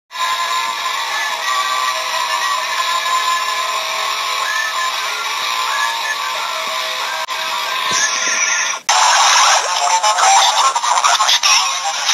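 Logo jingle music with sustained tones, cutting off suddenly about nine seconds in and giving way to a louder, busier logo soundtrack with voice-like sounds.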